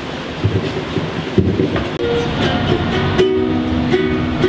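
An upright double bass and a ukulele start playing over a low rumble. Clear, held notes come in about halfway through and grow stronger.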